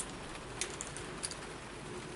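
Quiet steady background hiss with a few faint, sharp clicks from hands handling a small e-liquid bottle and a vape atomizer.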